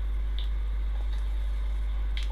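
A steady low hum with a faint click or two over it.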